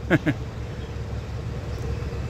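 Steady low outdoor rumble with a faint steady hum, after a man's voice trails off in the first moment.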